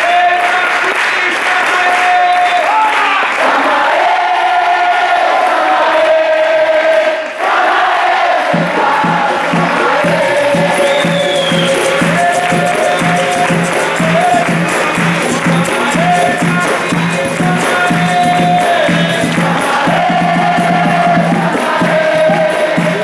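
A crowd singing a capoeira song together with hand-clapping. About eight seconds in, berimbaus and percussion join with a steady, even rhythm under the singing.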